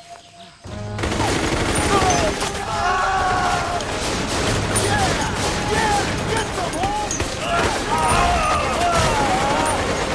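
Heavy, continuous rapid gunfire in a film battle scene, starting suddenly about a second in, with shouting voices over it.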